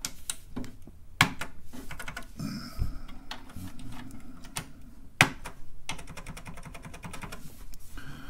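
Plastic keycaps being handled and pressed onto the key switch stems of a TRS-80 Model 4 keyboard: a series of clicks and taps. There are two sharper snaps, about a second in and about five seconds in, and a quick run of fine clicks later on.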